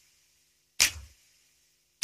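Sparse drum hits in a song's intro, a little over a second apart: each is a deep thud with a hissy crash on top that dies away quickly.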